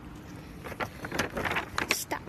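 Rustling and wind noise on a handheld phone's microphone, steady at first, then with irregular scraping and knocking from handling about halfway through.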